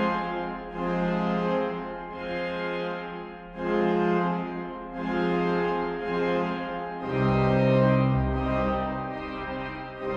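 Hauptwerk virtual pipe organ, sampled from the French organ of Oloron-Sainte-Marie, playing sustained chords from a coupling manual that sounds the great and the swell together, with the swell's super-octave coupler on. The chords change about once a second, and deeper bass notes come in about seven seconds in.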